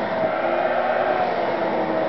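Household vacuum cleaner motor running with a constant whine, without change in pitch or level.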